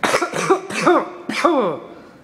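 A man coughing in a fit of about five coughs in quick succession.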